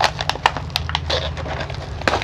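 Plastic packaging crackling and rustling as hands pull a wrapped packet out of a zippered fabric case: a quick, irregular string of sharp crackles.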